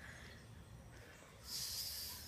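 Soft hiss of breath close to the microphone, about a second long, starting about one and a half seconds in after near-quiet.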